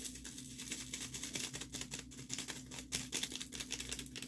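Rapid, irregular light clicks and taps of a diamond painting drill pen pressing small resin drills onto the canvas, over a faint steady hum.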